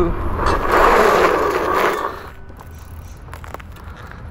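A locked fat tire of an electric bike skidding on asphalt under hard braking. It is a loud, rough skid of under two seconds that cuts off suddenly as the bike stops.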